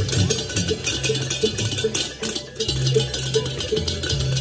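Indonesian gamelan-style percussion ensemble playing: a small gong or bell-like metal struck in a steady pulse about three times a second over clashing cymbals, with low drum and gong tones beneath.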